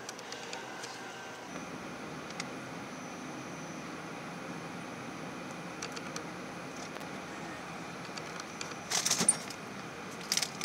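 Steady background hum of a supermarket's frozen-food aisle, refrigerated cases and ventilation, with a faint thin high tone. Near the end a plastic food package crinkles as it is handled.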